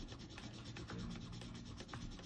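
Black colored pencil shading on paper: a faint, quick back-and-forth scratching of the lead as an area is filled in with dark colour.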